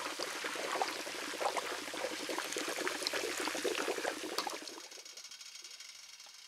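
A pot of wax boiling hard: a dense bubbling crackle as moisture boils out of the artillery shells sunk in it. About five seconds in it drops suddenly to a much quieter, even hiss.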